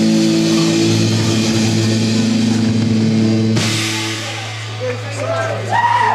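Live rock band with electric guitars holding a sustained closing chord, which cuts off about three and a half seconds in. A low steady amplifier hum carries on afterwards, and voices start near the end.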